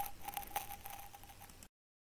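Faint light ticks over a faint steady tone, then the sound cuts off to dead silence shortly before the end.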